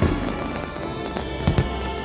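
Fanfare music with held tones, with firework bangs over it: one at the start and a quick pair about a second and a half in.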